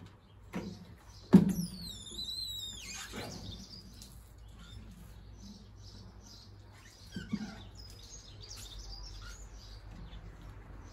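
Window-cleaning tools knocking against the window frame and glass: a sharp knock about a second in, then a high wavering squeak of squeegee rubber on wet glass lasting about a second and a half. Lighter squeaks follow, with another knock near seven seconds.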